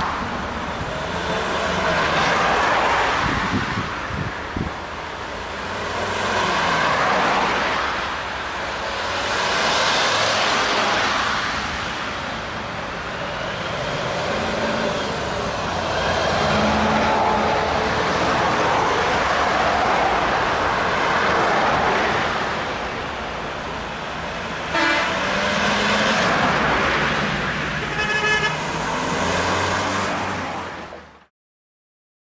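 A convoy of tow trucks driving past one after another, engine and tyre noise swelling and fading as each vehicle goes by. Horns toot among them, with two short toots near the end.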